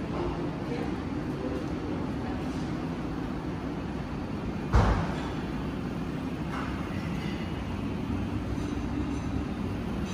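Steady low rumble of room background noise, with one sharp thump a little before the halfway point.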